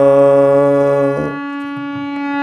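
Harmonium holding one steady note (Sa) while a man's sung "saa" rides on it, pitched to match the harmonium's tonic; the voice stops a little past one second in and the harmonium note sounds on alone.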